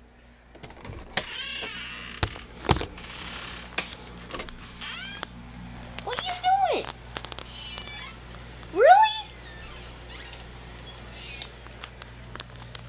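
A domestic cat meowing several times in drawn-out calls, the loudest a rising meow near the end. A sharp knock sounds about three seconds in.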